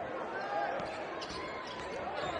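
Basketball being dribbled on a hardwood court, with a couple of short sneaker squeaks and crowd chatter in the arena.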